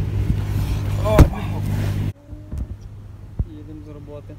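A car's engine running steadily beside the open car, with voices and the knocks of bags being loaded. A sharp loud knock with a shout comes about a second in. Just after halfway the sound drops abruptly to the much quieter inside of the car, with a few words and a click.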